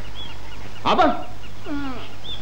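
Faint bird chirps over a steady low soundtrack hum, with one short, loud cry about a second in.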